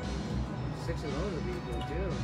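Video slot machine's game music and reel-spin sounds as the reels turn, over a steady low bass hum, with faint wavering melodic tones in the second half.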